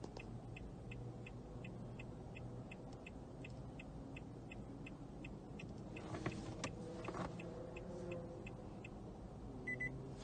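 Faint, steady ticking of the car's hazard-flasher, about three ticks a second. Near the end a short electronic beep sounds, a welcome sign in the key-programming sequence.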